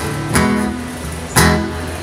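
Acoustic guitar strummed, with two strong strokes about a second apart and the chord ringing between them.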